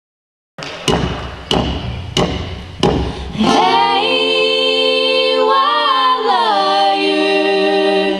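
Four sharp knocks, evenly spaced about two-thirds of a second apart, then a small group of young male and female voices singing a held a cappella chord in close harmony. About six seconds in the chord slides down to a lower one.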